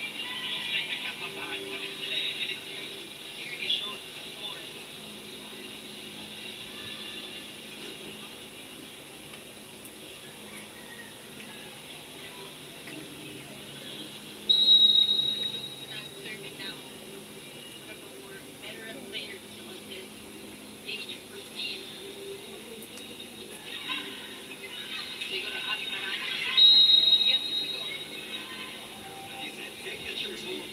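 A televised volleyball match's audio playing through computer speakers. A referee's whistle blows briefly about 14 seconds in and again about 27 seconds in, over crowd noise from the arena and broadcast commentary.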